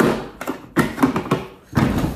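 The water tank of an Xbloom coffee machine being set back into place on the back of the machine: a handful of short knocks and thuds as it is handled and seated.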